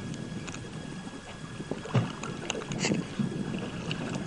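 Wind noise on the microphone and water moving around a small fishing boat, with a few faint, irregular clicks and knocks.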